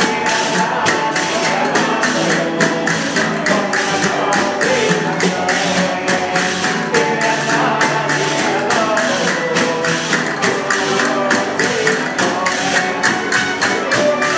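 Spanish folk string band playing a Christmas carol (villancico): violins carrying the tune over strummed guitars and a bandurria-type lute, with a tambourine keeping a steady beat.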